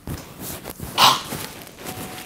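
A man spluttering in disgust at a bad taste in his mouth, with one loud, noisy blast of breath about halfway through and smaller mouth and breath noises around it.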